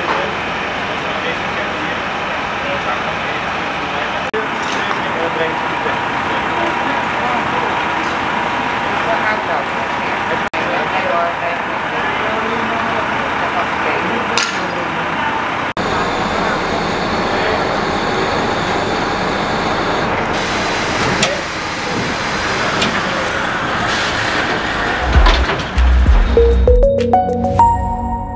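Street sound: indistinct voices over a steady hum of vehicles and traffic, changing abruptly twice.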